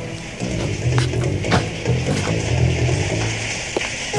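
Background music with a low, pulsing bass line, and a few short sharp knocks over it.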